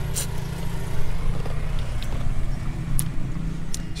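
Steady low rumble of outdoor noise, with a few short mouth clicks and smacks as a waffle-cone ice cream is eaten, the loudest just after the start.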